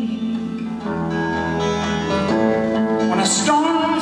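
Solo guitar played live: held, ringing chords that change about a second in and again just past the two-second mark, with a sharper strummed attack near the end.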